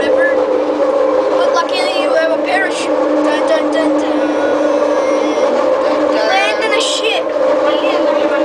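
Heard from inside the car: a Bombardier Innovia Metro Mark I people-mover train, driven by linear induction motors, running along its guideway with a steady two-pitch hum. Indistinct voices of people talking come in twice.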